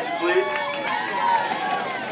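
Crowd chatter: many voices talking at once, with no music playing.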